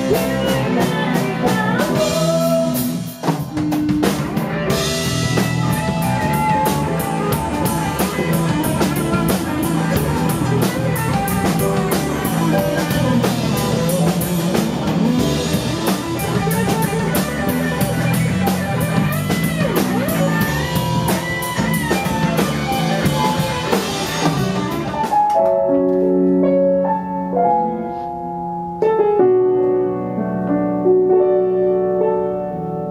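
Live rock band playing an instrumental passage: drum kit and electric guitars, with a lead guitar bending notes over the band. About 25 seconds in the full band drops out and a keyboard alone plays slow piano-sound chords.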